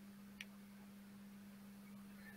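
Near silence: room tone with a faint steady hum and a single faint click about half a second in.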